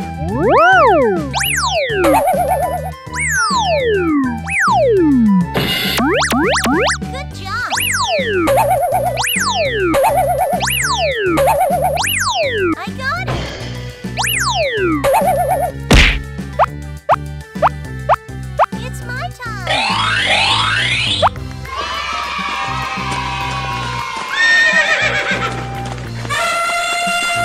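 Upbeat children's cartoon music with many quick cartoon sound effects sliding down in pitch, one after another. A single sharp hit comes about two-thirds of the way in, followed by rising sliding tones and a busier jumble of effects near the end.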